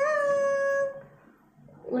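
A woman's voice holding a long sung "ta-da" note, with a small lift in pitch about where it starts here, then ending about a second in. A spoken word follows near the end.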